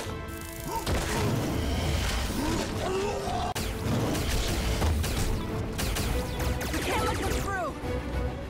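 Film score music under battle sound effects: scattered impacts and crashes, with a few short swooping sounds, the clearest group near the end.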